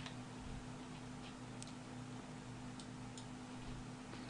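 A few faint computer mouse clicks, scattered a second or so apart, over a steady low electrical hum.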